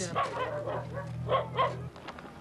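Several short, high animal calls over a steady low hum that stops just before the end.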